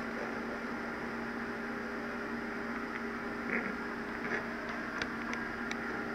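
Steady background hum with a few faint steady tones in it, and a few faint light ticks in the second half.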